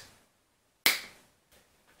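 A single sharp finger snap about a second in, with a short fade; otherwise near silence.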